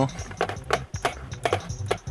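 Background music with a steady beat, with about five sharp clicks or knocks spaced unevenly across it.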